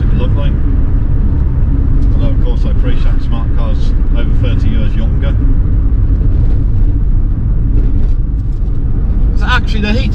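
In-cabin drive noise of a 1972 Hillman Imp: a steady low drone from its rear-mounted four-cylinder engine and the road, with a man talking over it at times.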